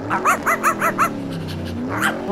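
A small dog yapping about five times in quick succession, each yap rising in pitch, as the voice of a toy puppy.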